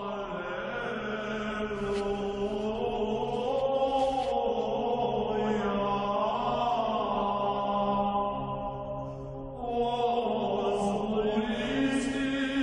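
Low voices chanting a slow, sustained melody over a steady held drone, with a short dip about nine and a half seconds in before the chant resumes.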